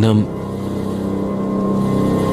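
A voice breaks off just after the start, then a steady low drone holds on one pitch without change.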